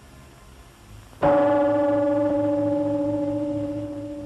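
A single struck gong-like tone about a second in, ringing on and slowly dying away. It is the film's sound cue for the magician's trick on the King of Hearts card.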